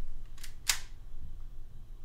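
Two short mechanical clicks about a quarter second apart, the second louder, as a pistol is handled.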